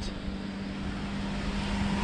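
Steady distant engine drone with a faint low hum, slowly growing a little louder.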